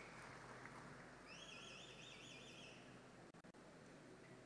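Near silence: faint room tone, with a faint warbling, whistle-like tone for about a second and a half in the middle.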